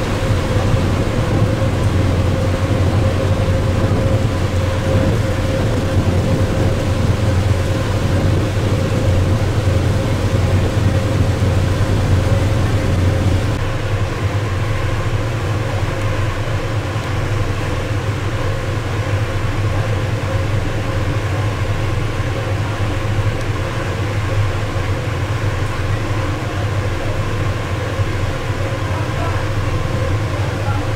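Boat engine running steadily, a loud low drone with a steady hum over it. It drops a little in level about halfway through.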